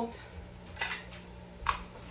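Caulking gun's built-in nozzle cutter squeezed on the tip of a DAP caulk tube: three short, sharp clicks a little under a second apart, the last the loudest. The cutter is a little old, so it takes repeated squeezes to cut the tip open.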